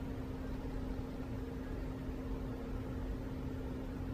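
Steady room hum with a constant low tone underneath, even throughout, with no sudden sounds.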